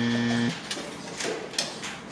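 A steady buzzing tone that cuts off about half a second in, then a few sharp clicks of draughts pieces being set down on the board and the game clock being pressed during fast blitz play.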